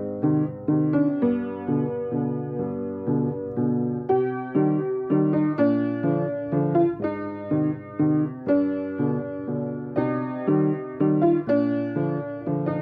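Background piano music: a steady stream of single notes and chords struck in turn, each fading after it is played.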